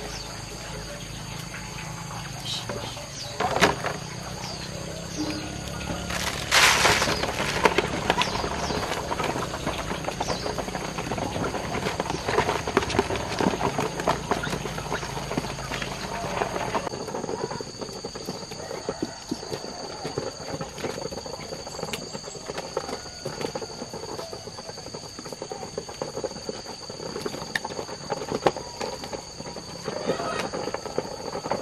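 Ducks feeding on grain poured from a bowl: a short rush of feed tipped out about six seconds in, then many quick pecking and dabbling clicks that thin out after the middle.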